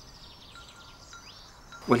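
Faint outdoor ambience with a few faint, short, high bird chirps scattered through it; a man's voice begins at the very end.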